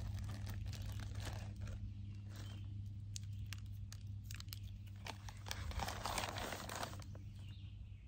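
Paper sandwich wrapper and a small plastic mayonnaise packet rustling and crinkling as they are handled, a scatter of small irregular crackles.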